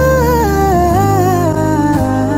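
A Filipino chill pop song playing: a single vocal melody line that slides downward over sustained bass notes, the bass shifting to a new note about a second in.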